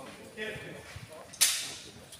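A single sharp crack about one and a half seconds in, fading out over half a second, with a brief voice just before it.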